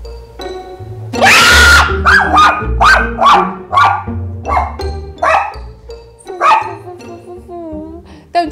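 A dog barking in a quick run of about ten barks, the first the longest and loudest, over background music with a steady bass line.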